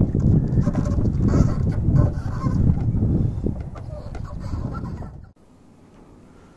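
Wind buffeting an outdoor microphone, a heavy low rumble with faint higher calls over it. It cuts off abruptly about five seconds in, leaving quiet indoor room tone.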